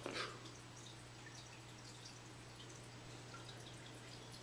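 Aquarium filter running: a steady low hum with faint scattered dripping and trickling of water. A brief, louder noise comes right at the start.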